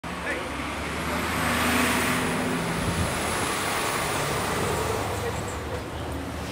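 Street traffic: a vehicle passing, loudest about two seconds in, over a steady background of road noise.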